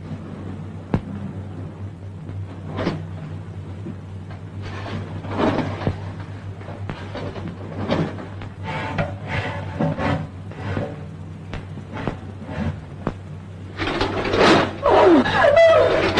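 Sparse suspense film score: scattered short notes and knocks over a steady low hum, swelling about two seconds before the end into louder sliding notes.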